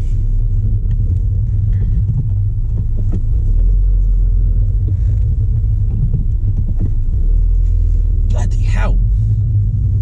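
Steady low rumble of a MINI Cooper S F56 heard from inside the cabin: its 2.0-litre turbocharged four-cylinder engine running, together with drivetrain and road noise.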